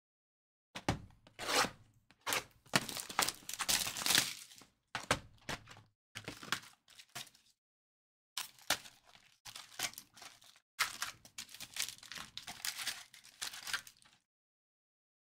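Foil trading-card pack wrappers crinkling and tearing as packs are pulled from a box and ripped open, in quick irregular rustles that come in two spells with a short pause about halfway.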